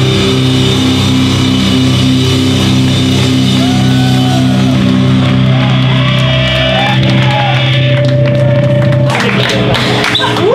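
A hardcore band's distorted electric guitars and bass holding one ringing chord, loud, with a few wavering tones on top; it cuts off about nine seconds in.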